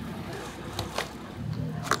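Motorcycle engines in street traffic, a low growl that builds near the end, over steady street noise with a couple of short clicks about a second in.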